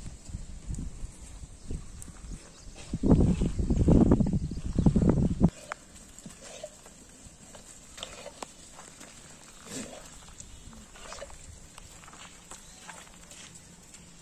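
A herd of goats milling on a dirt yard: scattered hoof and shuffling sounds and a few short, faint bleats. A loud low rumble fills the stretch from about three to five and a half seconds in and cuts off suddenly.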